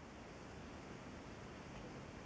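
Quiet room tone: a faint, steady hiss with no distinct sound.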